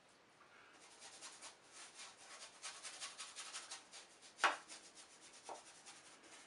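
A bristle brush scrubbing transparent red oxide oil paint onto a painting panel in quick back-and-forth strokes, blocking in a dark shadow area. There is a sharp tap about four and a half seconds in.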